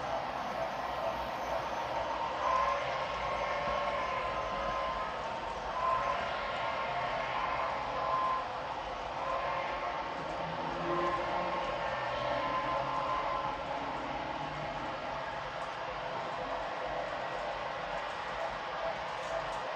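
HO scale model freight train running past, a steam locomotive followed by a string of coal hoppers: a steady rolling rattle of the cars' wheels on the track.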